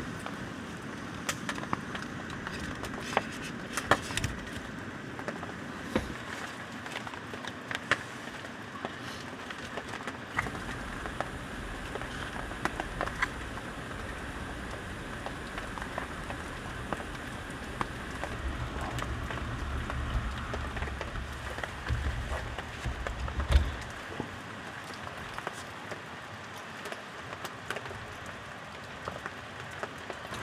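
Rain pattering steadily, with scattered clicks and knocks of camp gear being handled. About ten seconds in, a Jetboil Flash gas burner starts running under its pot to heat water, a low rumble that grows stronger before it cuts off about twenty-four seconds in.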